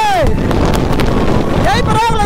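Wind buffeting the microphone of a moving motorcycle, with steady engine and road rumble underneath. A pitched voice falls away at the start and comes back near the end.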